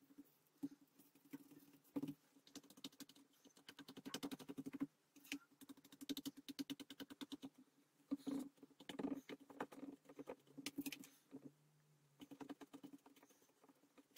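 Paintbrush scratching and dabbing paste on a plastic lid and a cardboard surface: faint, rapid scratchy strokes that come in short irregular runs.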